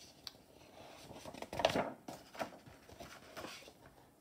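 Paper pages of a large picture book being turned by hand: a small click, then a run of rustling and sliding paper sounds, loudest about halfway through.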